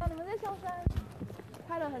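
Several people talking while walking, with two dull low thumps about a second apart.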